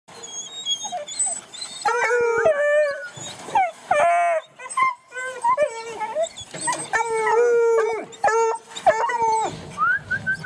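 Several young bluetick coonhound pups baying and howling together, their drawn-out calls overlapping and repeating from about two seconds in.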